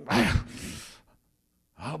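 A man's single breathy gasp, lasting about a second.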